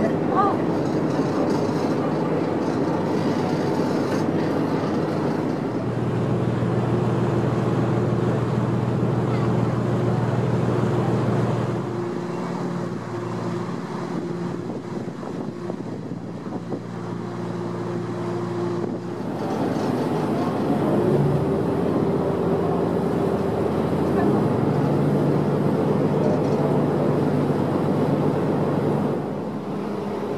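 Engines of a harbour cruise boat running steadily under way, heard from on board over a steady hiss of water and air. The engine note shifts several times, with a short rising whine about two-thirds of the way through.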